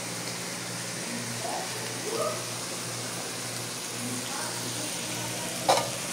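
Meat and onions sizzling steadily on a plough-disc griddle over a gas burner, with a low hum underneath. A single knock comes just before the end.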